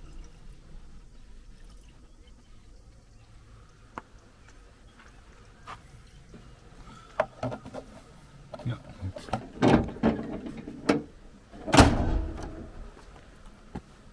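Clicks and knocks of handling parts in a van's engine bay, then two heavy thunks near the end, the louder second one as the bonnet is shut.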